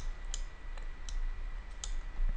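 Computer mouse clicking: about five short, sharp clicks spread over two seconds, over a steady low electrical hum and a faint steady high whine.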